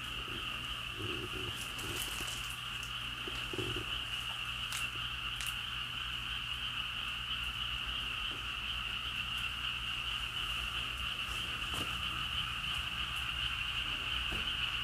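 A steady, continuous chorus of frogs calling, a dense high-pitched trilling drone that does not let up, with a few faint clicks about five seconds in.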